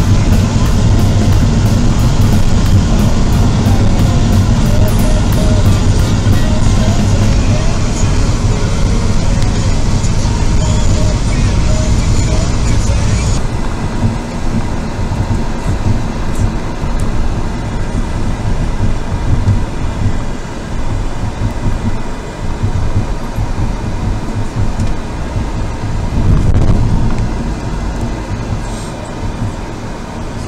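Music over the steady low rumble of a moving vehicle's road noise, heard from inside the vehicle; the music stops abruptly about halfway through, leaving only the cabin road noise.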